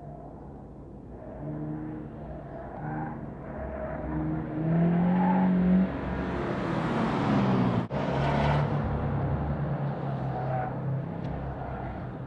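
Cars, including a camouflaged 2015 Subaru WRX prototype, working through a cone slalom: engine notes rise and fall with the throttle and grow loudest as the cars pass close by in the middle, with a brief break in the sound about two-thirds of the way through.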